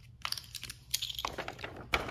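A few light clicks of plastic game chips being picked off a cardboard game board, then a paper instruction sheet rustling as it is lifted and handled.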